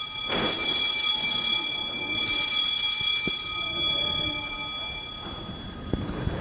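Altar bells (Sanctus bells) rung at the elevation of the chalice, marking the consecration: two rounds of bright, steady, many-toned ringing about two seconds apart, fading out near the end.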